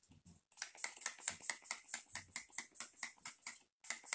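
Pump-mist bottle of makeup setting spray sprayed in a rapid run of short spritzes, about six a second, misting the face to set the makeup.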